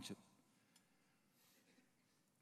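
Near silence: room tone, with a faint tick about a second in and another near the end.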